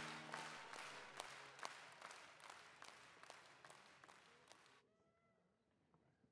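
Tail of an outro sting fading out: a held chord dies away within the first half-second, then faint clicks, about two or three a second over a hiss, fade to near silence a little before the end.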